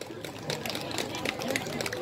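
Scattered clapping from a small audience, a quick run of irregular sharp claps, with faint chatter underneath.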